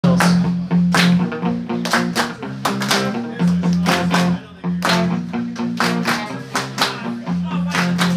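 Live band playing an instrumental passage with guitar, a steady beat and a sustained bass line, before the vocals come in.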